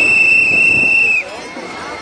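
A whistle held in one long, steady, high blast that cuts off about a second in, over the voices of a marching crowd.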